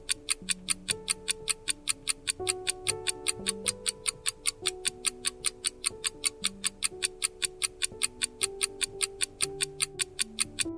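Countdown-timer sound effect: a clock ticking rapidly and evenly, several ticks a second, over soft background music with slow, held notes.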